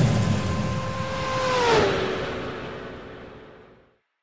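Outro sound effect of a car driving past: a steady engine note with a rushing whoosh, loudest and dropping in pitch as it passes under two seconds in, then fading away.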